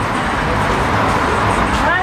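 Busy street ambience: a steady hum of traffic with indistinct voices of passers-by.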